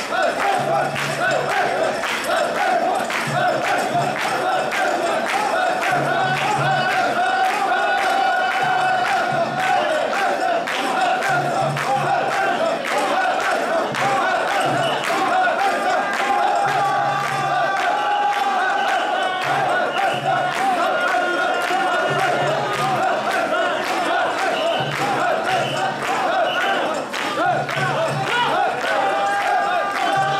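Many mikoshi bearers chanting together in a loud, steady, repeated rhythm while carrying a portable shrine, the chant pulsing about every couple of seconds.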